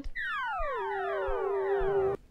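Synthesized falling tone, a game-show 'wrong answer' sound effect marking an incorrect guess: it slides steeply down in pitch in under a second, then holds one low steady note.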